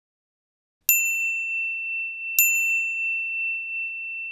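A high bell-like ding, struck twice about a second and a half apart, its ringing tone held steady and slowly fading.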